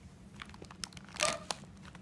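Paper rustling with scattered small clicks and taps, and one louder rustle a little past the middle, over a steady low room hum.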